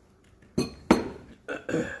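A man clearing his throat and coughing: two short, harsh bursts about a second apart, his throat burning from extra-spicy noodles.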